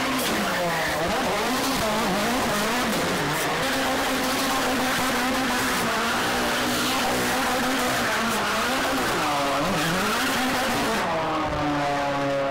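Ford Focus RS RX rallycross car drifting, its turbocharged four-cylinder revving up and down again and again, with the tyres skidding and squealing on the cobbles. The revs hold steadier for a few seconds in the middle before swinging again.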